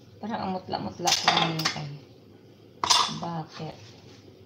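Kitchen utensils clinking against pots and dishes at the stove: a few sharp clinks, about a second in and again near three seconds.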